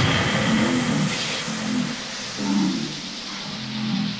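A drumless breakdown in an electronic techno mix: a low synth bass line plays in short repeated phrases over a steady hissing noise wash, with no kick drum.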